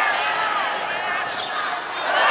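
Several voices shouting and calling over one another at a football match as an attack goes in on goal.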